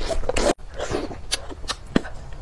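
Close-miked slurping of noodles sucked off a skewer. It cuts off abruptly about half a second in, followed by scattered wet clicks and crackles, with one loud click near the end.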